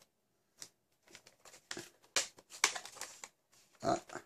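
Plastic toy blaster being lifted out of its cardboard packaging: irregular clicks, knocks and rustling of plastic and cardboard.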